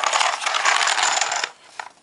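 Checker pieces rattling and clattering inside a cardboard checkers box as it is tilted and turned over: a dense stream of small clicks that stops suddenly about a second and a half in.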